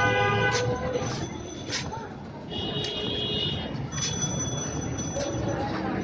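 Street background noise with two steady horn blasts from passing traffic: a longer one right at the start and a higher-pitched one about two and a half seconds in.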